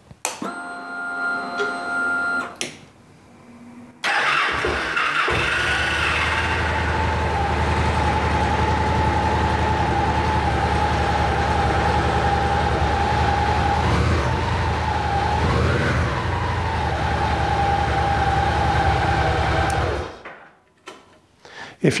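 A 2014 Victory Cross Country Tour's Freedom 106 V-twin engine is started in neutral after a brief electrical tone, then idles steadily for about fifteen seconds. The sound cuts off about two seconds before the end.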